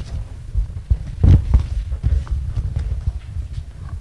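Low, irregular rumbling and soft thumps of noise on the microphone, with no speech.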